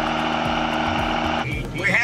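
Diesel pickup truck engine under heavy throttle while rolling coal, running steadily until it cuts off abruptly about one and a half seconds in. A voice starts near the end.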